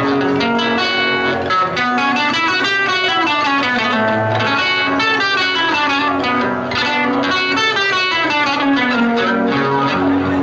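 Acoustic guitar playing a fast instrumental passage of quick plucked note runs, the accompaniment of a Panamanian décima torrente.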